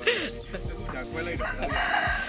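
A rooster crowing, one long call in the second half.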